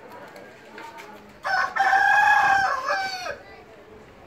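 A rooster crowing once, starting about a second and a half in: one long call of nearly two seconds that drops in pitch at the end.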